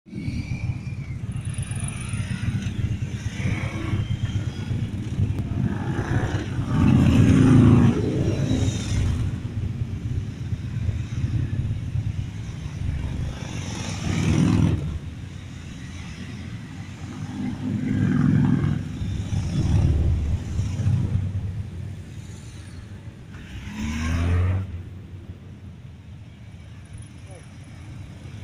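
A column of heavy cruiser motorcycles riding past one after another at low speed, their engines rumbling, swelling five or so times as individual bikes pass close.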